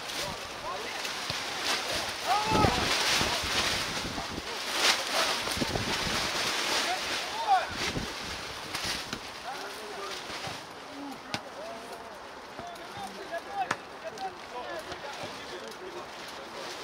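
Footballers' brief shouted calls across an outdoor pitch over a steady background hiss, livelier in the first half, with a few sharp knocks later on.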